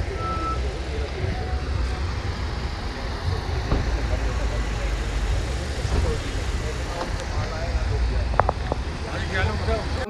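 Busy car park: cars running and moving, with a heavy low rumble, background voices, and a few short beeps, one just after the start and a cluster near the end.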